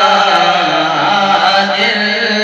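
Two men singing a naat, an Urdu devotional hymn, into microphones, in a chant-like melody of long held notes that bend slowly in pitch.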